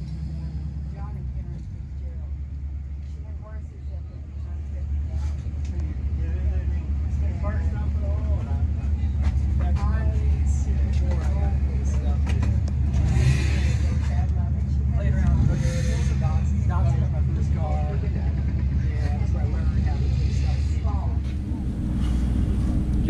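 A steady low rumble with faint voices talking over it.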